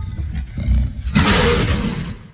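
A deep, rough growl that swells into a loud roar about a second in.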